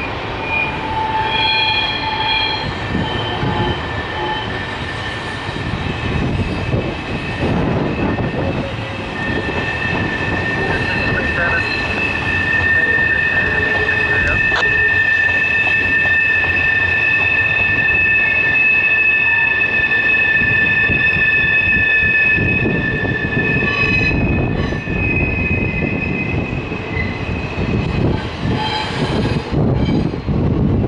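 Double-stack intermodal freight cars rolling past with a steady low rumble, their steel wheels squealing on the rails: short squeals in the first few seconds, then a long, steady two-pitched screech from about ten seconds in until near the end.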